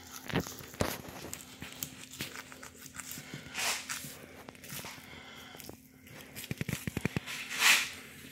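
Sharp knife slicing raw blue catfish flesh along the spine while the fillet is peeled back by hand: scattered wet clicks and tearing, a few short scrapes, and a quick run of small ticks near the end.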